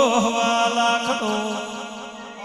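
A man's voice chanting a devotional line through a microphone, the held note wavering at first, then trailing off and fading after about a second.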